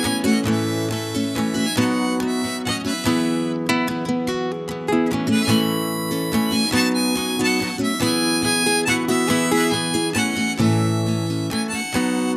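Instrumental break of a folk-rock song: a harmonica plays the melody over acoustic guitar.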